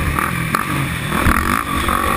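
Can-Am racing quad's engine running hard on a dirt track, heard from the rider's helmet camera, with a couple of sharp knocks about half a second and just over a second in.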